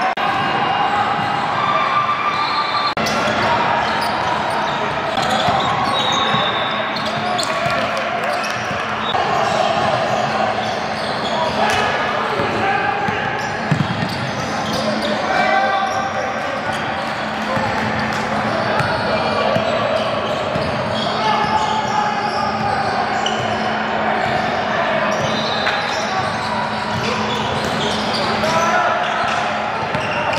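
Basketball game sounds in a large gym: a ball bouncing on the hardwood court in short sharp knocks, under steady indistinct voices of players and spectators that echo in the hall.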